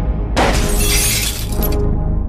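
Background music with a sudden glass-shattering sound effect about a third of a second in, its bright crash trailing off over about a second and a half.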